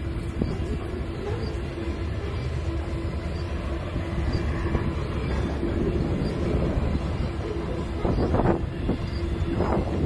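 Freight train of covered hopper cars rolling past: a steady rumble of wheels on rail with clickety-clack and a faint steady tone underneath. Two louder bursts of clatter come near the end.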